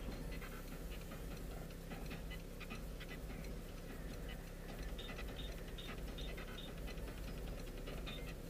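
A car's turn signal ticking at an even pace inside the cabin, over a low, steady engine and road hum.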